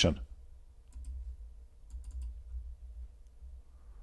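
A few faint computer mouse clicks, scattered about one, two and three seconds in, over a low steady hum.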